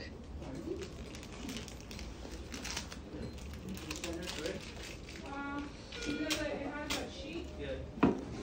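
Indistinct voices talking at a distance over a steady low hum, with scattered light clicks and handling noise.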